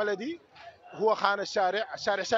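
Only speech: a man talking, with a brief pause about half a second in.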